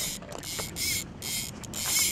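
Fly reel's click-and-pawl ratchet buzzing in short, evenly spaced bursts, about three a second, while a hooked carp is being played on the fly rod.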